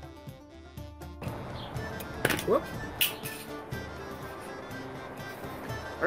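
Background music, joined after about a second by a noisier live track with a few sharp clicks of hands handling a plastic and foam toy axe, and a short rising squeak a little after two seconds in.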